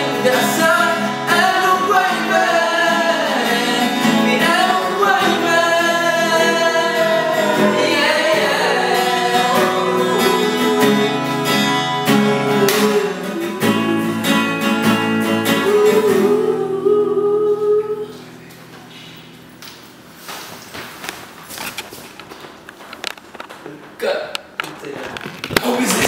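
Male voices singing with an acoustic guitar. The song stops about eighteen seconds in, leaving quiet room sound with a few light knocks.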